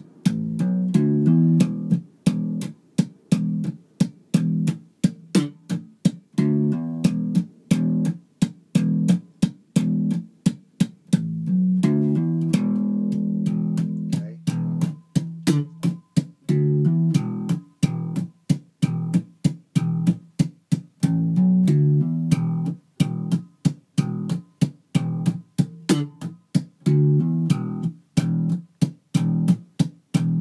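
Electric bass guitar played slap style: a fast, rhythmic funk line of thumb-slapped notes, packed with sharp muted percussive clicks from left-hand hits and mute taps between them. A longer held note comes near the middle.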